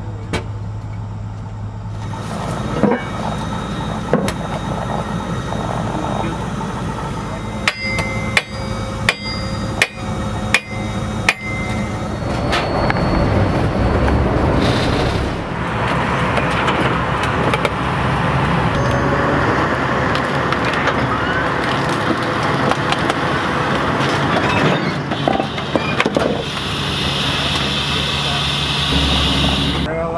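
A quick run of about seven ringing hammer blows on steel, a couple of seconds in all, over steady outdoor work noise.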